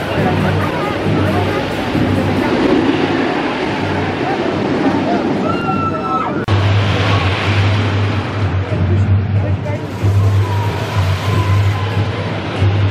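A GCI wooden roller coaster train running along its wooden track, with a low rumble that grows louder about six and a half seconds in as it passes close. There is a brief squeal just before that.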